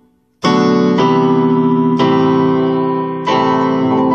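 Digital piano playing three sustained chords, the first struck about half a second in after a brief silence, the next at about two seconds and the last shortly before the end.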